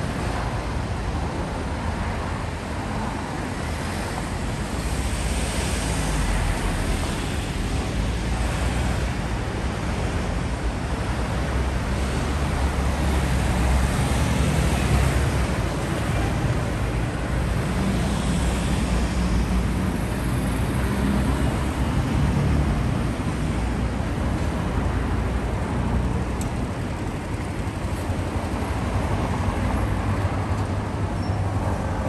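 City street traffic: cars and small trucks driving past, a continuous rumble of engines and tyres that swells and fades as vehicles go by.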